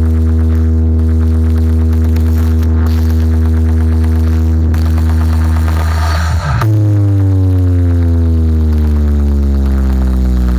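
A DJ sound system plays a very loud electronic bass drone. It holds one deep pitch for about six and a half seconds, then jumps abruptly to a new note that slides slowly downward.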